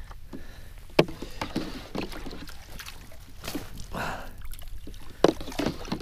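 A dip net working live pilchards in a bait cooler on a plastic kayak: water sloshing, with a few sharp knocks of the net and gear against the plastic, the loudest about a second in and again near the end.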